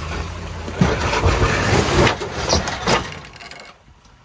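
Lexus LX470 engine running at crawling speed as the SUV climbs over rocks. Several sharp knocks and scrapes against rock come in the first three seconds, then the sound fades away near the end.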